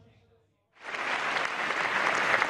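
A moment of silence, then audience applause starts abruptly just under a second in and carries on steadily.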